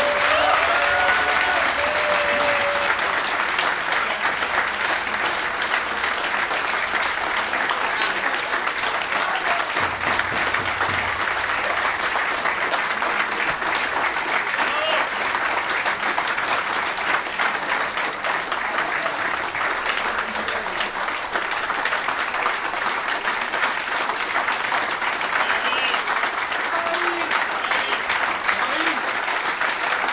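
A roomful of people applauding, steady, dense clapping that goes on without a break. A few voices call out over it in the first seconds.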